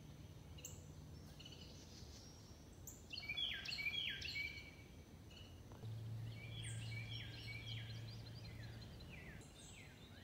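Songbirds singing: repeated series of short, high, downward-sliding whistled notes, loudest about three to four and a half seconds in and again through the second half.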